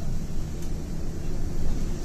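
City bus driving, with a steady low engine and road rumble heard from inside the passenger cabin.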